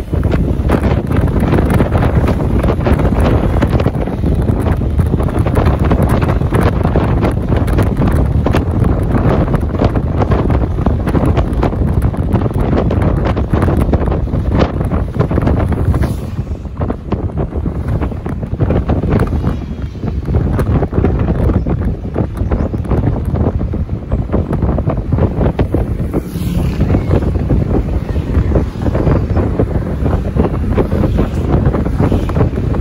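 Heavy wind buffeting the microphone of a camera on a moving vehicle: a loud, rough, continuous rush, strongest in the low end, that eases a little for a few seconds about halfway through.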